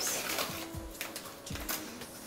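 Crinkling of a potato-chip bag as a hand reaches in and pulls out chips, a few short crackles, over soft background music.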